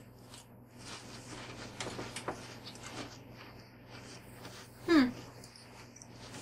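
Quiet chewing and soft mouth clicks of people eating canned sardines, with a short "hmm" about five seconds in.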